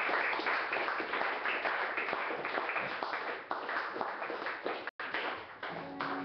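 Audience applause, many hands clapping, tapering off gradually toward the end, with a brief dropout in the audio a little before the end.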